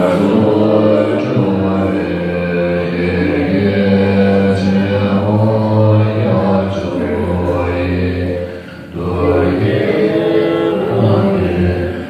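Tibetan Buddhist monks chanting together in low, long-held voices during a puja, with a short break for breath about eight and a half seconds in.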